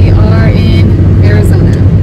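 Steady low rumble of a car driving, heard from inside the cabin, with a woman's voice talking over it.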